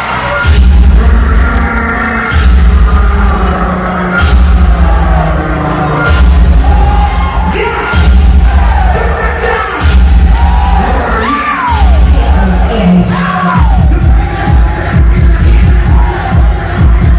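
Ballroom vogue dance track played by the DJ, loud, with a heavy bass note repeating about every two seconds. Crowd shouts and whoops rise over the beat.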